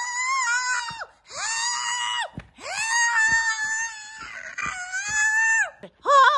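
A person screaming: four long, high-pitched held screams of about a second each, with short breaks between.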